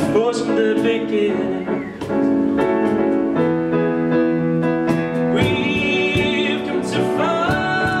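Live pop-rock band playing a cover: a male lead voice sings over keyboard chords, electric guitars, bass and hand percussion with regular cymbal strikes.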